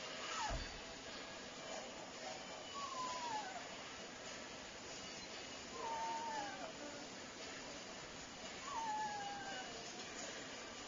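Neapolitan Mastiff puppy whining: four high whines, each falling in pitch, about three seconds apart. A short low thump comes about half a second in.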